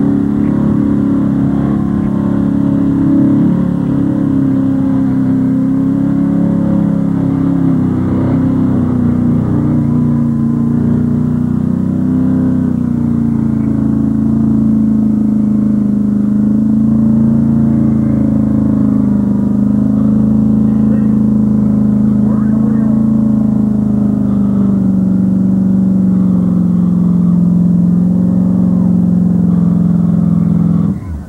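Pickup truck engine held at high revs for a long, steady pull as its wheels churn in deep mud, the truck bogged down to the axles. The pitch sinks gradually as it labours.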